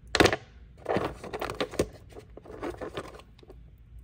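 Rough agate nodules knocking and rattling against each other in a plastic tub as one stone is put back and another picked out: a loud clack just after the start, then two spells of clattering clicks.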